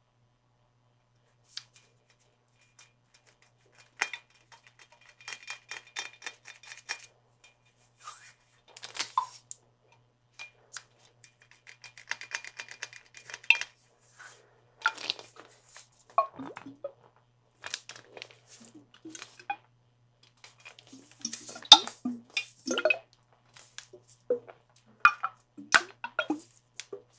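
Irregular taps, clinks and handling noises on a clear, water-filled skull-shaped container, with the busiest and loudest run of taps a few seconds before the end.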